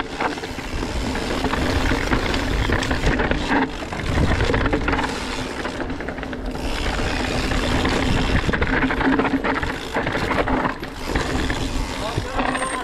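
Scott Spark full-suspension mountain bike descending rough, rocky singletrack: steady tyre noise on gravel and rock, with frequent knocks and rattles from the bike over the rough ground.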